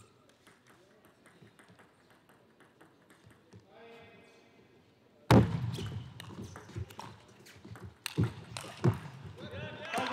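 Table tennis hall: faint clicks for about five seconds, then a sudden loud outburst of voices, with a few sharp knocks in the last few seconds.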